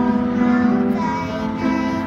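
Young girls singing a song to piano accompaniment, the voices holding long notes.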